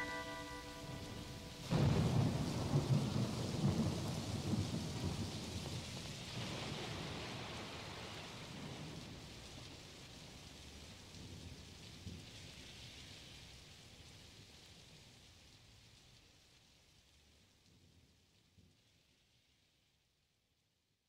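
A few held keyboard notes end, then a thunderclap about two seconds in rolls on over steady rain. The storm slowly fades out to silence by the end. This is the recorded thunderstorm effect that closes the song on the soundtrack.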